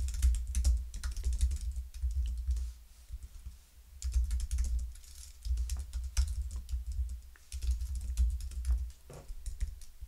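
Typing on a computer keyboard: runs of quick keystroke clicks in several bursts, with short pauses between them.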